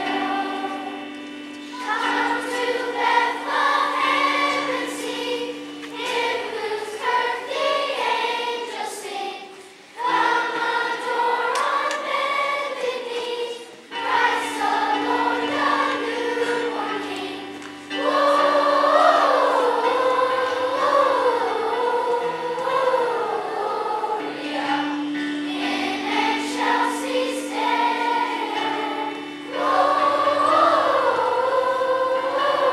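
Children's choir singing a song in phrases of a few seconds, with short breaks between them, over held low accompanying notes.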